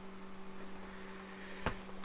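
Room tone: a steady electrical hum over faint hiss, with a single sharp click about a second and a half in.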